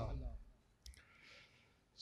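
A man's recitation voice trailing off with room echo, then near silence broken by one faint click just under a second in and a soft intake of breath before the next line starts at the very end.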